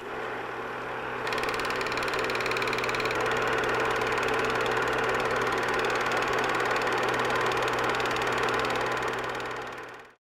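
Steady machine-like whirring with a fast, even rattle that thickens about a second in, fading out at the very end.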